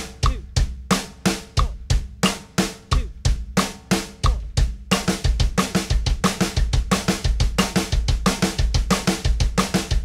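TAMA Starclassic drum kit played in a linear double bass exercise: pairs of snare strokes with the sticks alternate with pairs of kick strokes from the double bass pedals, in an even, steady pulse, with cymbals ringing over it.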